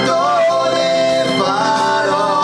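Two men singing an Italian song together into handheld microphones over instrumental accompaniment, live.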